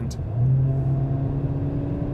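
Mercedes-AMG CLA 45 S's turbocharged 2.0-litre four-cylinder engine pulling under throttle in its normal drive mode, heard from inside the cabin as a steady low drone that comes in about half a second in. Subdued: there is not much to hear in this mode.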